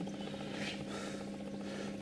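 Steady hum of aquarium sump equipment, with a faint wash of water as the reverse-osmosis top-up runs into the sump.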